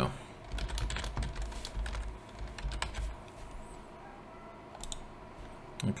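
Typing on a computer keyboard: an irregular run of keystrokes, with a few more clicks near the end.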